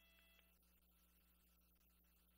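Near silence: a faint steady electrical hum and hiss between commentary lines.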